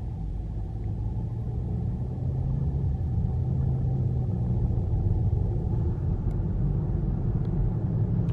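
Steady low rumble of road and engine noise inside a moving car's cabin, growing slightly louder.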